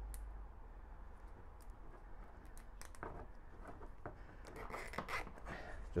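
Faint handling sounds of a plastic cable tie being threaded and pulled tight: a few light clicks and rustles, most of them in the second half.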